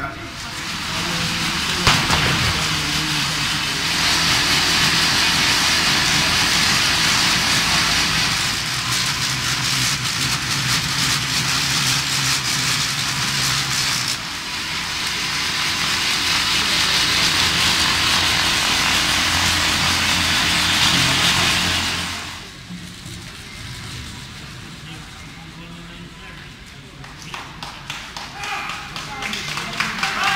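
Loud, steady whirring hiss with a low hum underneath, from racing bicycles spinning on stationary trainers. It shifts character at about 4 and 14 seconds and drops to a quieter background about 22 seconds in.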